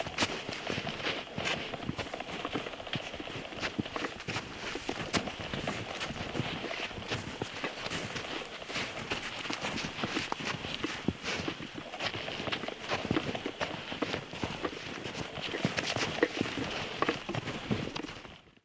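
Footsteps of several people walking through snow, a steady, irregular run of boot crunches close to the microphone.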